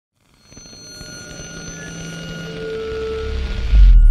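Electronic music intro: held synth tones over a rising wash that builds steadily in loudness, ending in a deep bass hit just before the end.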